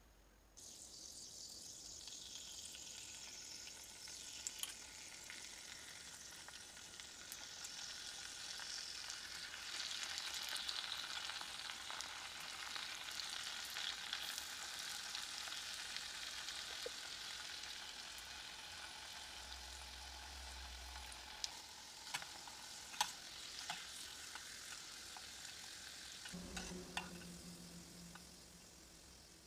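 Potato fries deep-frying in hot oil in a small steel pan: a steady sizzle that starts abruptly within the first second and runs on, with a few sharp clicks near the end.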